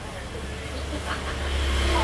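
Low, steady motor rumble that starts about half a second in and grows louder, like a road vehicle's engine.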